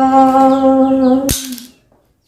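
A woman's voice holds one long chanted note of a Hmong call to the ancestral spirits. Just over a second in, a sharp clack, the split-horn divination pieces dropping onto the concrete floor, and the call fades out right after.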